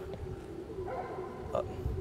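Quiet background with a faint steady hum, and a short spoken cue near the end.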